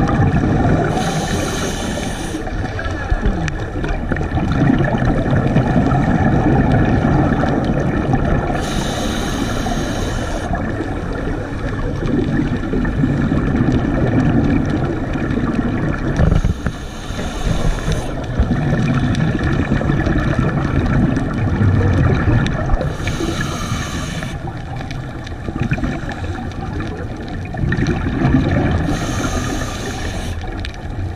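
A scuba diver breathing through a regulator, heard underwater: a hiss of inhalation about every seven seconds, with a rumble of exhaled bubbles between.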